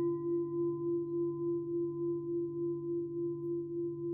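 Japanese standing temple bell ringing out after a strike, one clear tone with fainter higher overtones, wavering in a slow pulse two to three times a second as it decays. The lower hum of a larger bell struck earlier is still sounding beneath it.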